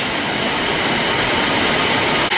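Steady rushing water noise from a submersible membrane filtration train during a back pulse (backwash), with water overflowing into the waste channel.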